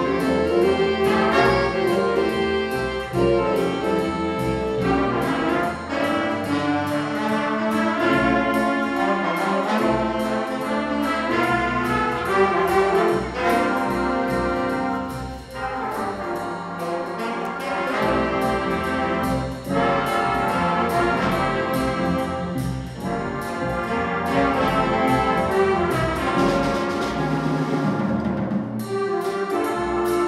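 A jazz big band playing live: trumpets, trombones and saxophones over drum kit, upright bass and piano, with the brass section carrying the tune.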